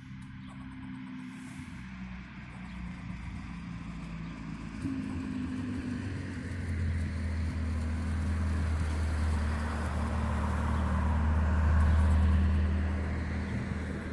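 A motor vehicle going by, its engine and road noise growing louder from about five seconds in, loudest near the end, then easing off.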